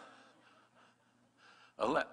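A pause in a man's voice over a microphone, with only faint room sound, then near the end a short, louder breath or gasp into the microphone.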